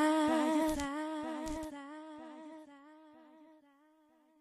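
A female singer's single held closing note, hummed with a slight waver, left alone after the backing track drops out and fading away to silence over about three seconds as the song ends.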